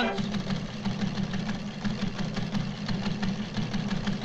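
News ticker machine clattering as it prints a paper tape: a fast, steady run of clicks over a low mechanical hum.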